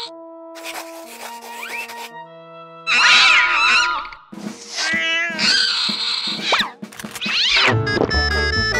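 Cartoon cat vocal effects: bursts of loud hissing alternating with wavering yowls, several times, after a few sparse music notes at the start.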